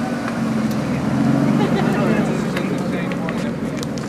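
Aston Martin Vanquish S's V12 engine running at low revs as the car pulls slowly away, its note swelling about a second in and easing off near the end.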